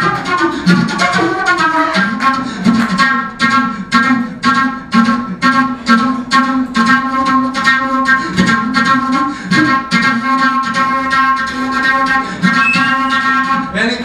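Unaccompanied jazz flute solo played with rapid, sharp, percussive attacks, several a second, over a steady low drone. It breaks off just before the end.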